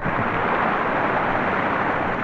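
A steady, even rushing noise that starts abruptly and holds at one loudness, like churning water.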